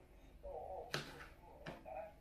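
A few quiet clinks of a knife and fork on a plate as strawberries are cut up and eaten, the sharpest tap about a second in.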